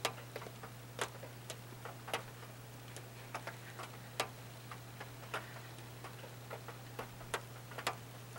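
Irregular sharp clicks and ticks, one to three a second and unevenly spaced, over a steady low hum.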